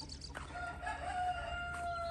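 A rooster crows once: one long, steady note held for nearly two seconds, falling off at the end.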